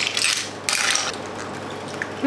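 A utensil scraping and clattering against a plate of food, in two short bursts within the first second.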